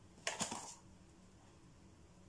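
Small metal mesh sieve tapped with a finger to sift cocoa powder, giving a brief rustling, clicking burst about a quarter second in, then faint room tone.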